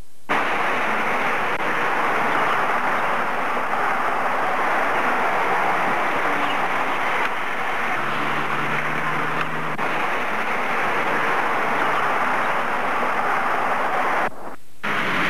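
Steady rushing noise that starts abruptly a moment in, with a faint low hum briefly just past the middle.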